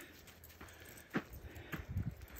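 Footsteps of a hiker walking on a dirt and gravel trail, the steps coming about half a second apart and getting louder from about a second in.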